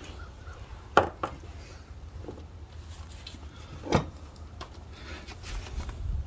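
Handling of bolts and tools: a sharp click about a second in with a lighter one just after, and another click near four seconds, over a low steady rumble.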